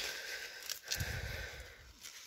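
Faint rustling of maize leaves and husk as a hand holds and turns an ear of corn, with a short low bump of handling noise about a second in.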